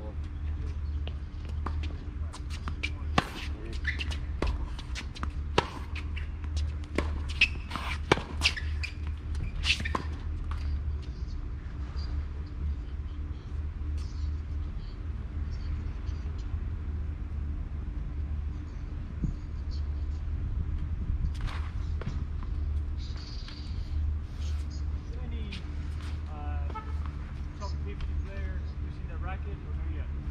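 Tennis balls struck by racquets and bouncing on the hard court during a rally: a run of sharp pops, most frequent in the first ten seconds, over a steady low rumble.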